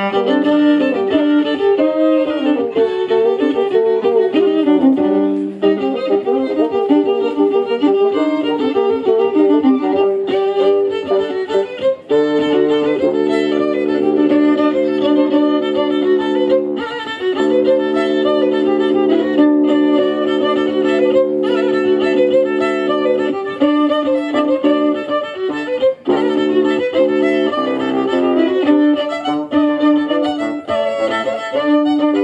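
Fiddle playing a lively folk dance tune live, with a stretch of long held notes in the middle.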